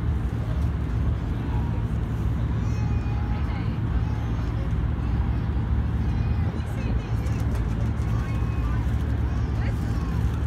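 Steady low engine rumble, with people's voices faint in the background.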